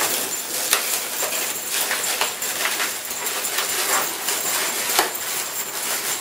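Latex twisting balloons rubbing and squeaking under the hands as a balloon figure is handled and twisted. Small jingle bells inside it jingle, with sharp clicks throughout.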